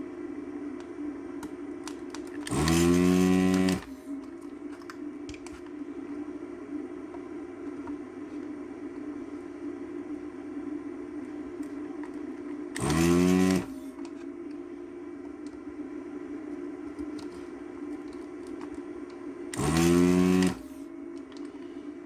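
Vacuum desoldering station's pump, triggered three times to suck solder off the board: each run lasts about a second and starts with a rising whine as the pump spins up. A steady hum runs under it.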